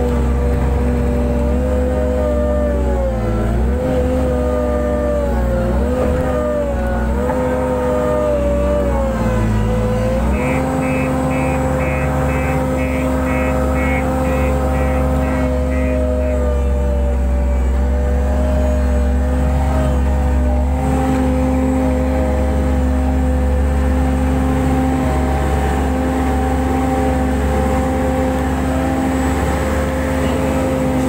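JCB 135 skid steer loader's diesel engine heard from inside the cab, its pitch dipping and recovering again and again under load for the first ten seconds, then running steady. A rapid series of short high beeps sounds for several seconds near the middle.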